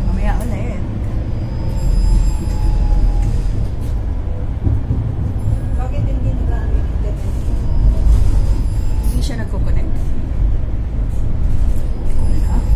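Steady low rumble of a moving city public-transport vehicle heard from inside the passenger cabin, with a few coughs near the end.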